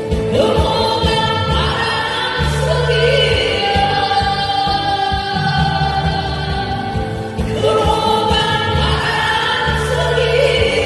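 Two women singing a Korean trot song together into microphones, over a backing track with a steady bass line, heard through a PA system.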